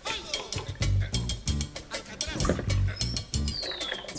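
Background music with a steady beat, and a bird's short falling whistle near the end.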